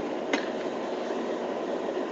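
Steady background noise inside a car cabin, an even hiss with no voices, broken by one faint click about a third of a second in.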